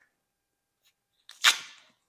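A strip of tape pulled and torn off its roll: one short, loud ripping sound about one and a half seconds in, after near silence.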